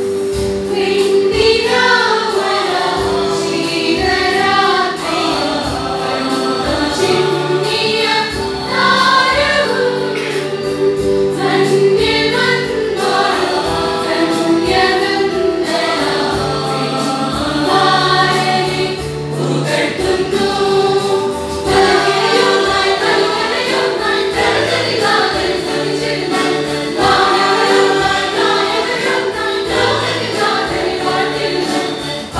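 Church choir singing a Malayalam song over sustained instrumental accompaniment and a steady beat.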